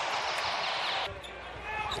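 Arena crowd cheering after an and-one layup, cut off abruptly about a second in, leaving quieter arena noise.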